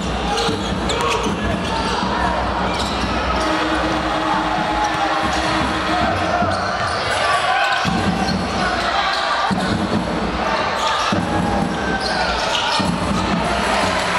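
A basketball dribbled on a hardwood court, with crowd voices in a large echoing sports hall.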